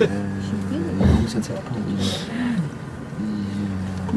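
Vehicle engine idling with a steady low drone, under low voices talking quietly; a low thump about a second in.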